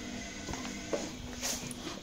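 Faint steady low hum with a few soft clicks and taps.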